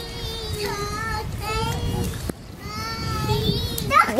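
A toddler's high-pitched, drawn-out sing-song vocalising in phrases of about a second each, with a short click a little past halfway.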